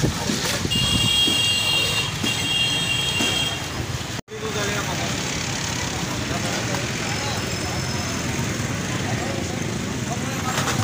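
Busy roadside street ambience: traffic noise and background voices. A steady high-pitched tone sounds through the first few seconds, and the sound drops out abruptly for an instant about four seconds in.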